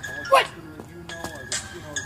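Background music with a high held tone and repeating notes about twice a second, under a single shouted 'What?' near the start.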